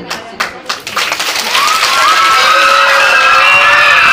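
A few scattered hand claps from the audience in a short lull in the dance music, then recorded music starts up again about one and a half seconds in and carries on.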